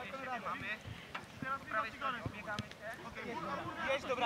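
Children's voices calling out across an open football pitch, with light wind on the microphone and a few short knocks.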